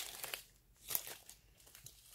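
Small plastic zip bags of diamond-painting rhinestones crinkling as they are handled, in short bouts with quiet gaps between.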